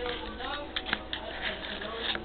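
A metal spoon clicking and tapping against a plastic baby bottle several times as powder is spooned in, with a voice faintly in the background.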